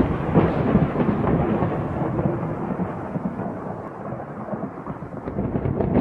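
A long, deep rolling rumble that starts suddenly, fades slowly, and swells again near the end.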